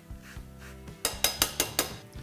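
Quiet background music, then about a second in, six quick sharp clinks in even succession: a metal rasp zester being tapped against the rim of a stainless saucepan to knock off the orange zest.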